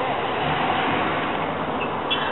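Steady outdoor background noise, an even hiss-like rumble that swells slightly about half a second in.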